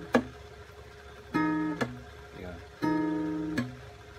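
Acoustic guitar playing an Emaj7 chord with its fifth, third and second strings plucked together, twice, each time ringing briefly and then cut off by a percussive mute. A muting click also comes just at the start.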